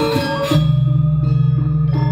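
Balinese gamelan playing. Bronze metallophones strike quick notes, then about half a second in a deep gong stroke rings on with a low, pulsing hum while the metallophones thin to a few scattered notes.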